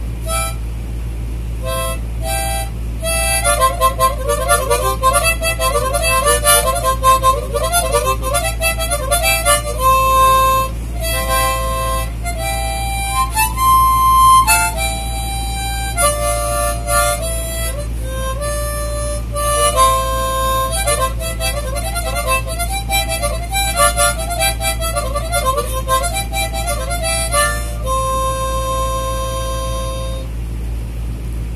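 Small see-through plastic blues harp (diatonic harmonica) playing a tune: quick runs of notes mixed with held notes, ending on a long held note. A steady low hum runs underneath.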